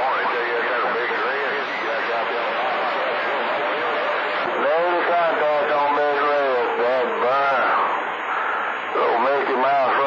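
A voice coming in over CB radio skip on channel 28 (27.285 MHz), heard through steady static hiss and hard to make out.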